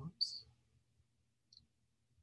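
Mostly quiet room tone with a faint low hum, broken by a short soft hiss just after the start and a tiny click about a second and a half in.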